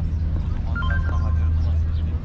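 People's voices in the background over a steady low rumble, with a short pitched voice sound near the middle.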